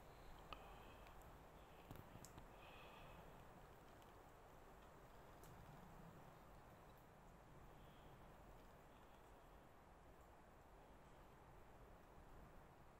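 Near silence: a faint steady hiss with a few soft crackles from a small fire burning in a metal tray.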